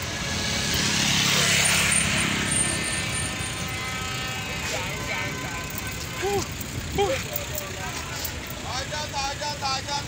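Busy street traffic: vehicle engines running, swelling as a vehicle passes close in the first few seconds, with voices of people nearby in the second half.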